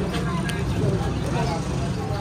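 Several people talking in the background over a steady low engine hum, with a single short click about half a second in.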